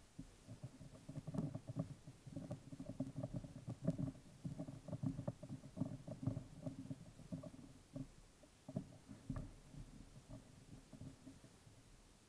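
Screwdriver bit held in a pocket multi-tool turning a pistol-grip screw: a run of quiet, irregular clicks and scrapes as the bit works the screw, thinning out and stopping near the end.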